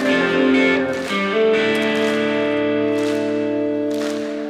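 Live rock band playing a slow ballad between sung lines, with guitar chords ringing and held. The chord changes a little over a second in.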